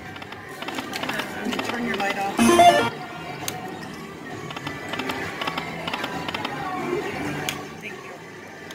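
Dragon's Riches Lightning Link slot machine playing its reel-spin music and win chimes over the busy background of a casino floor, with a short louder burst of sound about two and a half seconds in.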